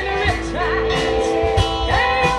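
Live band playing amplified music: electric and acoustic guitars, bass guitar and a steady drum beat, with a singer's voice over them.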